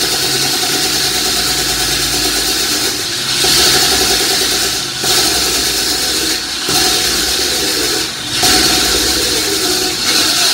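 Hydraulic hand-held concrete saw cutting into a tiled concrete floor, mixed with a wet vacuum sucking up the cutting slurry. The steady cutting noise dips briefly four times and comes back louder each time.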